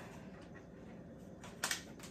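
Quiet room tone, then a short, sharp double clack about one and a half seconds in as the mop's flat plastic base is set down on the floor.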